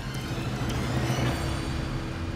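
Small hydraulic quarry drilling rig's engine running steadily, with background music over it.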